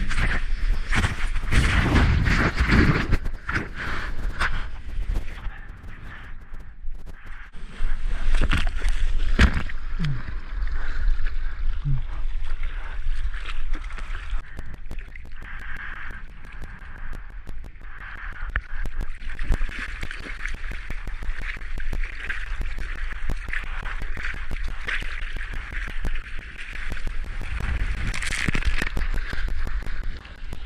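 Wind rumbling on an action-camera microphone out on choppy seawater, with water sloshing and splashing around a surfboard. It is loudest in the first few seconds and again around eight seconds in.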